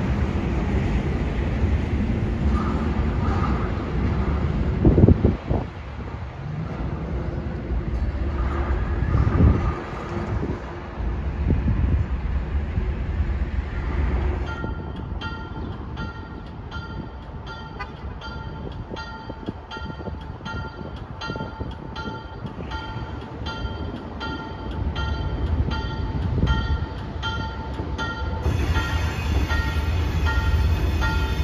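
Low rumble with two heavy thumps, then a railroad bell ringing at a steady pace of about two strokes a second as an Alco RS27 diesel locomotive approaches a street crossing.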